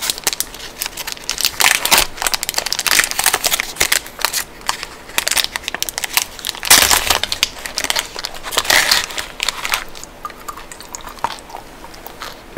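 Wrapper of a small Toblerone chocolate bar being peeled and torn open by hand, a dense run of crinkling and crackling. It is loudest a little past halfway and thins out over the last couple of seconds.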